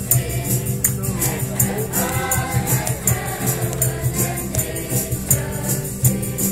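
Choir singing a Christmas carol over a steady instrumental accompaniment, with a jingling percussion beat, like a tambourine or shaker, keeping quick, even time.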